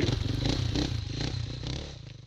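Enduro dirt bike engine running along a rocky trail with loose stones clattering, fading out.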